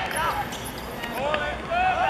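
Football players shouting to each other on the pitch during play: a string of short, high, rising-and-falling calls.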